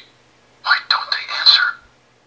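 A short recorded Buzz Lightyear voice line played by the ornament's sound chip, thin and telephone-like through its small speaker, starting about half a second in.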